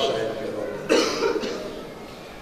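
A single cough about a second in, after a man's voice trails off.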